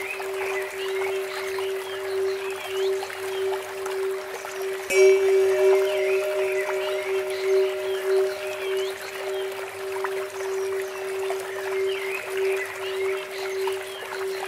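Meditation soundscape: a steady, gently pulsing drone tone, with a Tibetan bell struck once about five seconds in and left ringing. Under it run trickling water from a bamboo fountain and bird chirps.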